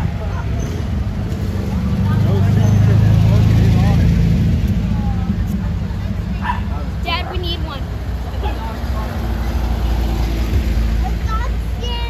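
Air-cooled flat-four engines of vintage Volkswagens passing slowly, one after another. A classic Beetle is loudest about two to four seconds in, and a VW Thing's engine comes up near the end.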